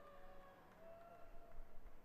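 Faint arena crowd murmur, with a few distant voices carrying over it.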